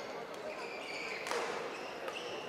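Sports shoes squeaking briefly on the badminton court mat around the middle, ending in a sharp tap, over the murmur of voices in a large indoor hall.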